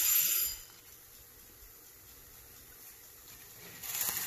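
Hiss from an activated flameless ration heater bag, pressed by hand as it fills with gas, cutting off about half a second in. A faint steady fizz follows, with another burst of noise near the end.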